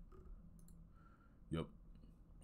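A few faint, short computer mouse clicks as the browser view is changed.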